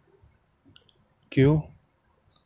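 Faint ballpoint pen taps and scratches on notebook paper, with a man's voice saying one short word (the letter "q") a little past halfway.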